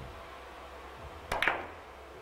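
Three-cushion billiard shot: a cue striking the ball and balls clicking, a sharp double click about a second and a half in.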